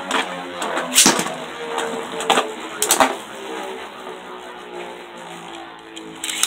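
Two Beyblade Burst tops, Ace Ashura and Bushin Ashura, spinning in a plastic stadium with a steady whirring hum and clacking together in sharp hits about a second in and a few more times between two and three seconds in. The hum fades as the tops lose speed.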